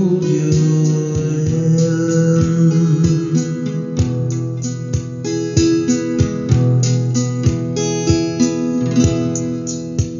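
Acoustic guitar playing the instrumental close of a song without vocals: picked notes ringing over held chords, with a steady run of plucked attacks.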